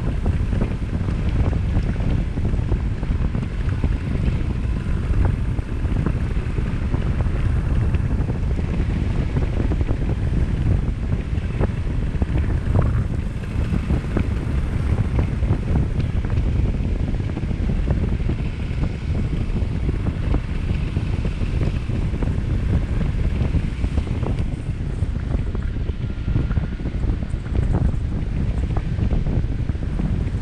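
Wind buffeting the microphone of a camera carried in flight on a tandem paramotor: a steady, loud, low rush of air noise.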